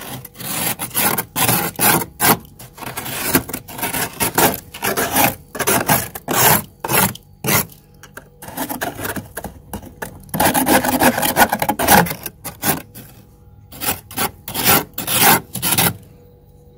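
A metal spoon scraping thick frost inside a freezer: many short scraping strokes in quick, irregular succession, with one longer unbroken scrape about ten seconds in.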